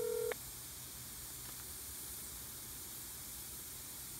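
Phone ringback tone heard through an iPhone's speakerphone: the steady ring cuts off about a third of a second in. Then comes the silent gap between rings, with only faint hiss, as the call goes unanswered.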